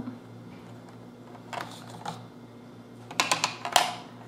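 Wooden Cuisenaire ten rods being set down and lined up side by side on a hundred square, clicking against each other: a few light clicks, then a quick run of clicks near the end.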